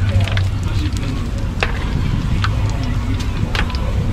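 Hot oil sizzling and crackling in a large frying wok as food is turned in it with metal tongs, with scattered sharp pops and clicks over a steady low hum.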